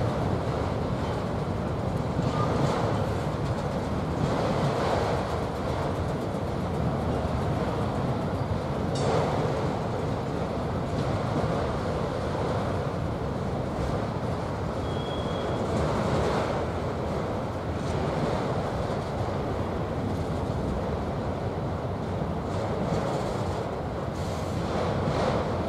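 A freight train of autorack cars rolling past: a steady rumble of wheels on rail, with occasional knocks from the cars passing over the track.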